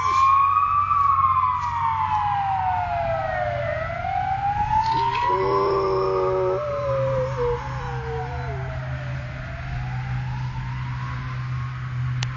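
Ambulance siren wailing in slow rising and falling sweeps, with a boxer dog howling along once, from about five to nine seconds in, the howl wavering near its end.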